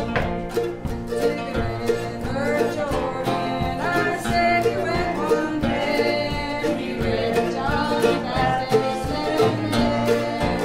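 A small folk-gospel band performing live: acoustic guitars strumming a steady beat, with several voices singing a gospel song over them.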